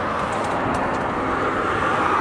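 Road traffic noise from a vehicle passing on the highway: a steady rush of tyres on asphalt that swells slightly as it approaches.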